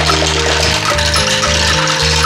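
Cheerful background music with a dense rattling, rushing cartoon sound effect laid over it as a pile of balls spills out. The effect starts suddenly.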